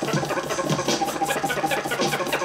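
Vinyl record scratched by hand on a turntable, a sustained buzzing tone chopped into rapid stutters.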